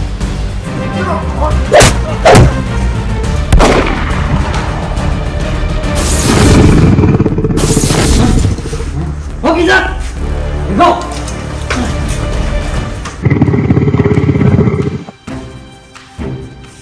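Action background music with added sound effects: a few sharp, shot-like cracks in the first four seconds, and two heavy booms, about six and thirteen seconds in. Short vocal cries come between the booms.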